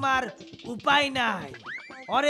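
A man's voice talking or exclaiming in short bursts, then near the end a short rising comic 'boing'-type sound effect.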